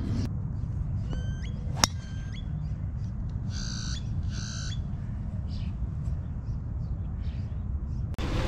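A golf driver striking a ball off the tee: one sharp crack a little under two seconds in. Birds call around it, short chirping notes near the shot and two harsh squawks a couple of seconds later, over a steady low outdoor rumble.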